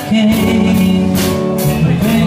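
Live soft-rock band playing: electric guitars and bass holding sustained notes over a drum kit, with cymbal strokes at a steady beat.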